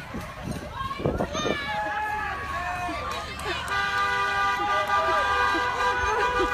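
Wordless voices and shouts, then a car horn held down continuously from a little under four seconds in, with voices still going over it.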